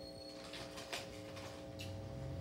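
Faint playback from a videoke machine: steady sustained tones, with a brief high tone at the start and a few soft swishing noises.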